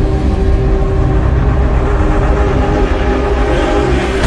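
Cinematic intro sound effect: a loud, steady deep rumble under a held drone of several low tones.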